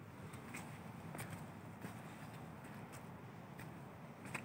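Footsteps on a dirt forest path strewn with dry fallen leaves: soft crunches and clicks at a walking pace, over a faint low rumble.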